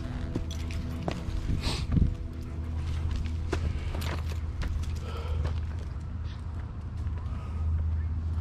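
Footsteps crunching on a dirt forest trail over a steady low rumble. Background music with sustained chords fades out about two seconds in.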